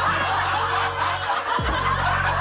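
Laughter over steady background music.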